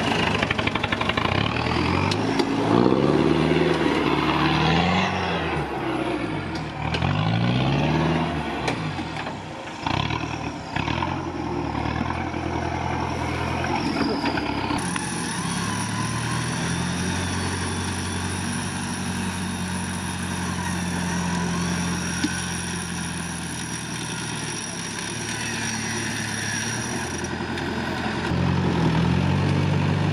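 Modified off-road 4x4 engine revving up and down again and again as it crawls over mud and ruts, then running at steadier moderate revs for a stretch, with revs rising again near the end.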